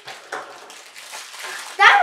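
Faint rustling and crinkling of small toy packaging being handled. A child starts speaking near the end.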